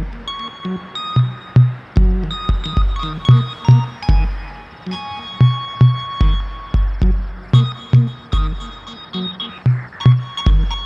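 Electronic music with a steady beat: deep bass drum hits and low bass notes, with sustained high synth tones above.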